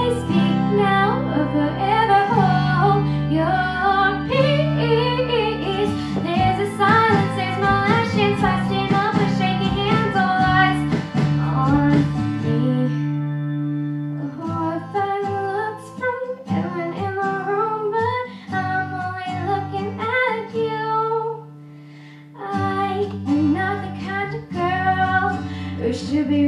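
A young girl singing a song solo into a microphone over an instrumental accompaniment, with a brief lull in the music about four seconds before the end.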